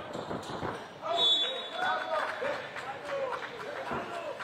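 Court-side voices of players and spectators on an outdoor 3x3 basketball court, with faint knocks of play. A short, high, steady tone sounds about a second in and lasts about a second.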